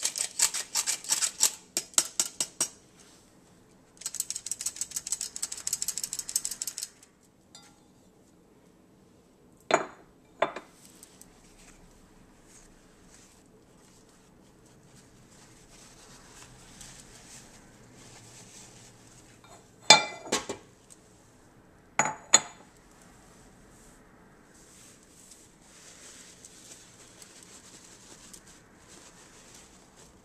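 Metal hand-operated flour sifter being worked, its mechanism clicking rapidly in two runs over the first seven seconds as flour is sifted through it. Later come a few sharp knocks and soft paper-towel rustling.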